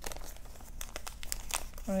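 Irregular crinkling and small clicks of thin clear plastic packaging handled by fingers at close range, as a soil test kit's reagent capsule is unwrapped.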